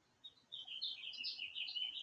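A bird singing faintly in the background: a quick, warbling run of high chirps that starts about half a second in and runs on without a break.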